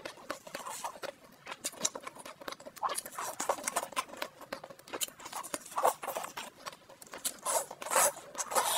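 Close-miked wet eating sounds: lip smacks, chewing and slurps of saucy food, with the squish of sauce-slick gloved fingers handling it. The sound is a quick irregular run of wet clicks and smacks that gets denser near the end as she bites in.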